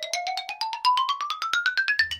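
A sound effect of short, xylophone-like notes in a quick run, about ten a second, climbing steadily in pitch.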